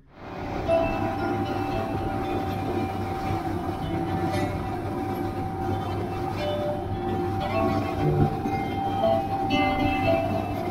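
Motorboat running fast over open water: a steady engine rumble with a rush of wind and spray. Background music with long held notes plays over it.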